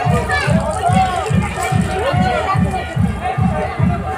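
Music from a public-address loudspeaker system: a steady deep drum beat about two and a half beats a second, with a gliding, wavering voice or melody line over it.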